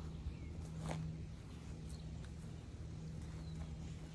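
Backyard ambience: a steady low hum with faint bird chirps, and one brief click about a second in.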